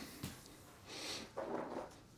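Faint, brief rustling of hands brushing over a taped cardboard shipping box, twice.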